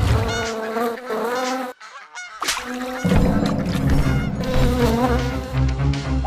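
Cartoon fly buzzing, its pitch wavering up and down as it flies about, with a short break just before two seconds in. A low bass comes in under it about three seconds in.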